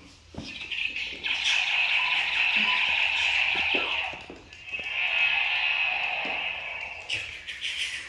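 A toy gun's electronic sound effect playing from its small speaker: two long, buzzy, high-pitched blasts, the first about three seconds and the second about two and a half, with a few clicks in between.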